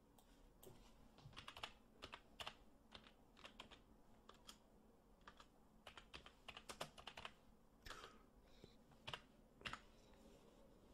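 Slow typing on a computer keyboard: faint, irregular key clicks, one or a few at a time with short pauses between them.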